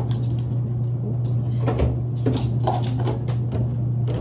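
Clicks and knocks of a laundry detergent bottle and washing machine being handled as a load is started, over a steady low hum.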